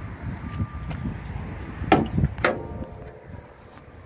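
Two sharp metallic clunks about half a second apart, the second ringing briefly: the hood of a 2003 Chevy S10 Blazer being unlatched and raised. There is low handling noise before them.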